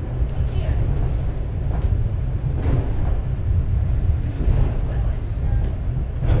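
Takao-san cable car running on its track, heard from inside the cabin as a steady low rumble, with indistinct passenger voices over it.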